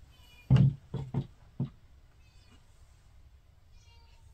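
A domestic cat meowing faintly a few times in the background, thin and high-pitched, with a few dull knocks in the first second and a half that are louder than the meows.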